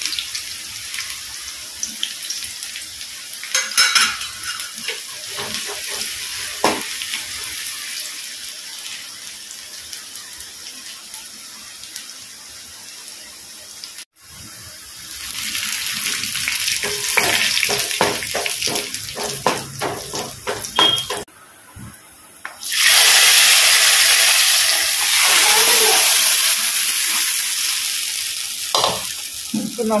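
Sliced shallots frying in hot oil in a wok, a steady sizzle. Then the fried shallots and curry leaves are stirred with a wooden spatula, a run of knocks against the pan. A much louder sizzle starts about three-quarters of the way through and lasts about six seconds.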